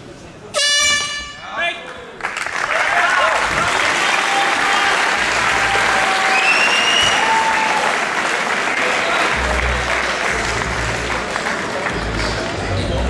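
An air horn sounds the end of the round: a long blast about half a second in, then a short one. The crowd then applauds and shouts.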